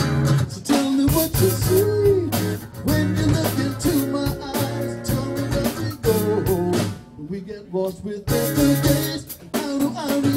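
Live acoustic pop-rock song: an acoustic guitar being strummed, with a singing voice drawing out wordless, gliding notes over it. The sound thins out briefly about seven seconds in.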